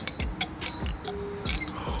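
Metal knife tip clicking and scraping against the inside of a small glass jar of liquid, a string of light irregular clicks.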